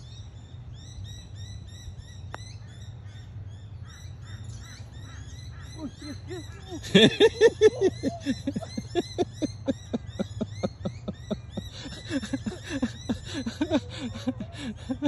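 Birds calling: small high chirps repeated throughout over a steady low hum. About halfway through, a loud run of rapidly repeated calls starts and keeps going.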